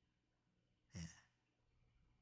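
Near silence, broken about a second in by one short, soft, breathy utterance from a man, a brief "예" (yes).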